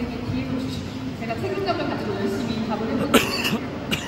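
Low, indistinct talking, then a single cough a little past three seconds in, and a short click just before the end.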